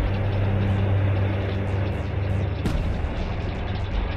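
Main battle tank driving: a steady, loud low engine rumble with scattered short clanks.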